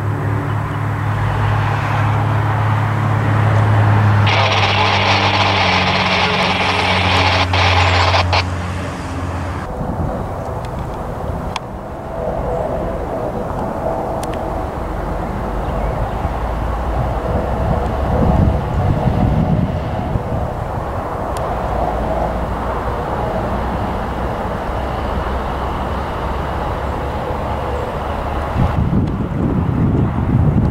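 A small propeller plane's engine drone overhead with steady tones, and a louder hiss for a few seconds about four seconds in. About ten seconds in it gives way to a US Coast Guard MH-65 Dolphin helicopter's rotor and engine noise, getting louder near the end as it passes low.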